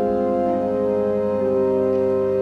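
Church organ holding sustained chords, the notes shifting slowly from one chord to the next.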